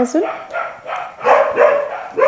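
A dog barking several times in quick succession, loudest in the second half.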